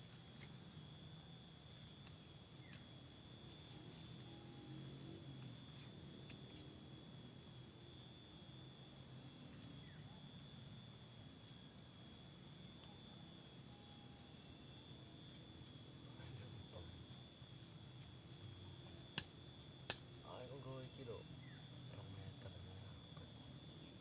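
Faint, steady high-pitched insect chorus in two unbroken tones, with two sharp clicks a little under a second apart about three-quarters of the way in.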